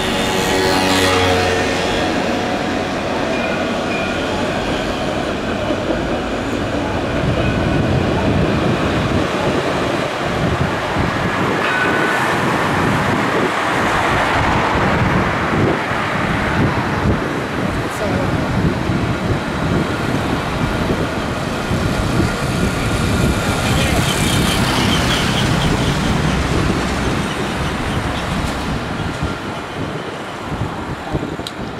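Low-floor electric street trams rolling past along with road traffic: a steady rumble and hiss of wheels on rail, with thin high tones coming and going around the middle.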